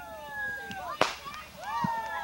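Consumer fireworks at a backyard display: one sharp bang of a shell bursting about a second in, after long whistling tones that slowly fall in pitch. More rising-and-falling whistles start near the end.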